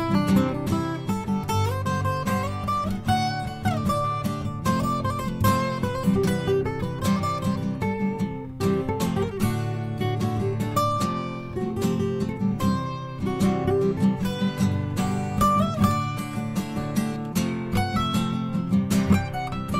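Acoustic guitar playing an instrumental passage with no singing: strummed chords underneath a picked melody whose notes now and then slide up or down in pitch.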